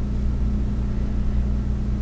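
A steady low hum with several pitches and no change, like a running appliance or motor in the room.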